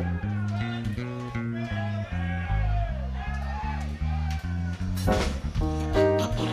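Live rock band vamping, with an electric bass walking a steady line of separate low notes about twice a second. Sliding, arching higher tones sound above it, and a short loud burst comes about five seconds in.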